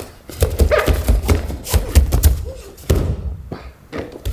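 Bare feet thudding and shuffling on martial-arts mats as an aikido partner is moved and thrown into a breakfall, with a run of heavy thuds between about one and three seconds in and a short vocal grunt early on.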